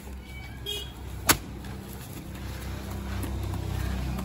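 A steady low engine-like hum, with a single sharp crack a little over a second in.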